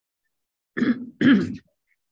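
A person clearing their throat in two short bursts, about a second in.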